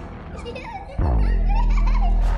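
A small child giggling over background music. About a second in, a loud, deep low boom cuts in suddenly and holds for over a second.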